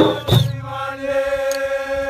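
Mandinka traditional music: a voice holds one long chanted note over drumming, with two drum strokes near the start.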